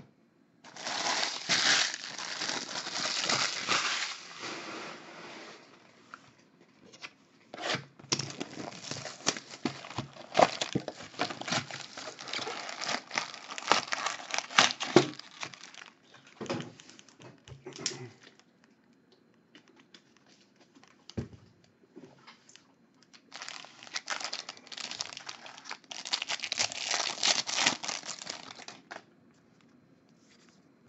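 Plastic wrapper and foil trading-card packs crinkling and tearing as a box of Bowman Draft jumbo packs is opened and emptied. The sound comes in three spells of rustling, with short quiet pauses between them.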